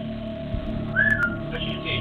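A single short whistle about a second in, a brief note that dips slightly in pitch, over a steady background hum.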